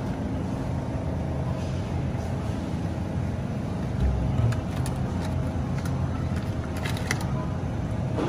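Supermarket aisle ambience: a steady low hum and rumble beside open refrigerated display cases. In the second half come a few short clicks and rustles as plastic-wrapped sausage packs are handled on the shelf.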